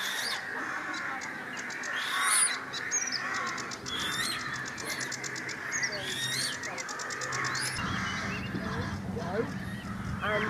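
Wild birds calling together around a wetland pond: many short chirps and glides, a fast rattling trill and some harsher calls. A low steady hum comes in near the end.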